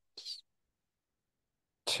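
A man's short, quick intake of breath just after the start, then dead silence; the slow speaking voice comes back right at the end.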